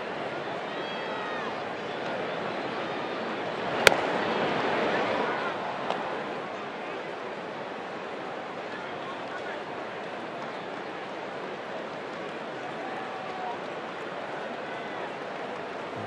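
Steady ballpark crowd murmur. About four seconds in there is a single sharp pop of a pitched baseball into the catcher's mitt, and the crowd noise swells for a couple of seconds after it.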